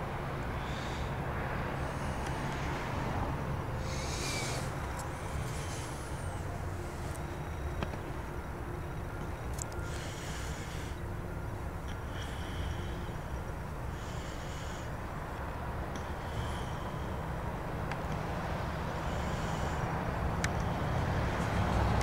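Outdoor evening ambience: a steady low rumble, with short high-pitched calls or chirps every couple of seconds and a few faint clicks.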